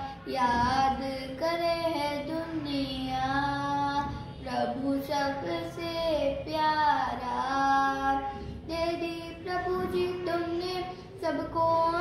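A young girl singing a Hindi devotional song solo, in long held notes that slide between pitches, phrase after phrase with short breaths between.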